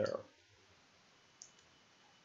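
A single faint computer keyboard keystroke about one and a half seconds in, against quiet room tone.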